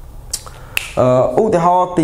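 Two short, sharp clicks about half a second apart, followed by a man speaking.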